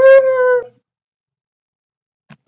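A person imitating a dog: a single loud whining howl that swoops up at the start, holds one pitch, and stops under a second in.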